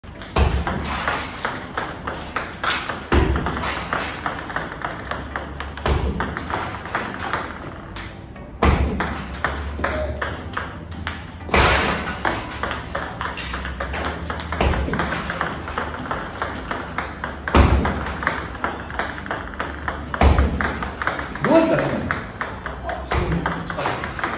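Table tennis serves practised one after another: a constant run of sharp clicks from balls hitting the racket and bouncing on the table and floor, with a stronger knock about every three seconds as each serve is struck.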